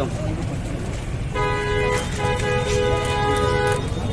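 A vehicle horn sounding twice, a short honk and then a longer held one of about a second and a half, over a steady low rumble of street traffic.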